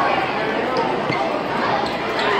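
Crowd of many voices chattering in a large hall, with a few dull thumps of footsteps on the stage risers.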